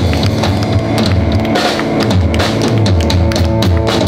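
Live blues band playing, with the drum kit hit steadily and loudly over electric guitar and electric bass.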